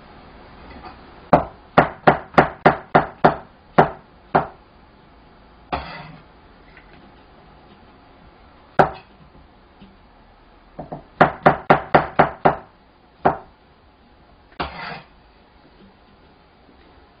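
Chinese cleaver knocking on a cutting board as button mushrooms are sliced: two quick runs of about eight strokes each, with a few single knocks and short scrapes between them.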